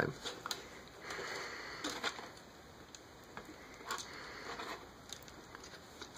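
Faint rubbing and a few small clicks of hard plastic parts being handled on the Excellent Toys Ptolemy super-deformed Optimus Prime transforming figure.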